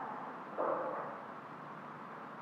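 Low room tone with a brief muffled sound that starts just over half a second in and fades away over about a second.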